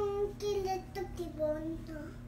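A toddler's high sing-song voice: several drawn-out syllables that step down in pitch, more chant than clear words.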